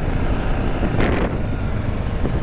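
TVS Apache RR 310 motorcycle riding along: engine running under a steady rush of wind noise on the microphone, with a brief louder rush about a second in.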